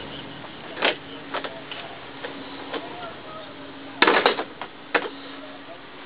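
Irregular clicks and knocks of a handheld camera being carried on foot, with the loudest cluster about four seconds in, over a steady low hum.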